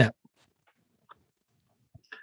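Near silence in a pause between a man's sentences, with the end of a spoken word at the very start and a faint tick about a second in.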